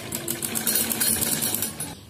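Domestic straight-stitch sewing machine stitching a seam through cotton fabric: a fast, even clatter of the needle mechanism with a steady low hum, stopping just before the end.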